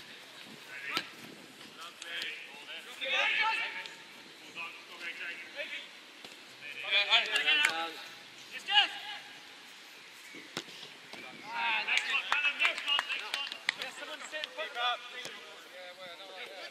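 Indistinct shouts and calls of players on a football pitch, coming in bursts, with a few sharp knocks of a football being kicked.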